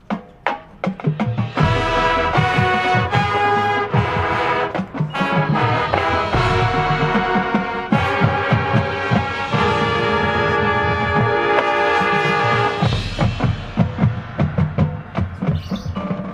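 A high school marching band starts its competition show. A few sharp drum hits open it, and about a second and a half in the full brass section and percussion enter with loud sustained chords. Near the end the music thins to repeated percussion hits.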